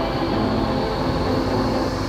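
Jeweller's blowtorch flame running with a loud, steady rushing noise and a thin high whistle as it melts a piece of gold.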